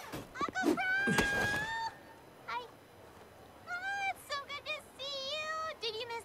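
A high-pitched excited squealing voice from the cartoon's soundtrack: a squeal that rises and holds for about a second near the start, then a string of short, high, arching calls in the second half.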